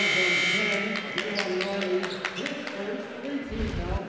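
Basketball court sound in an almost empty gym: players' voices and scattered sharp clicks, with a steady high tone over the first second. Near the end comes a low whoosh from the broadcast's replay transition effect.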